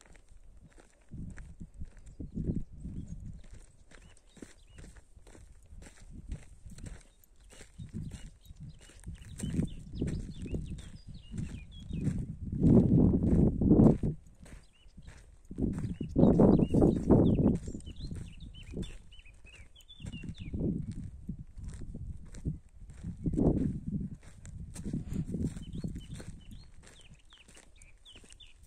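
Footsteps on dry, cracked clay ground, with gusts of wind buffeting the microphone in low rumbles that are loudest about halfway through, and faint bird chirps.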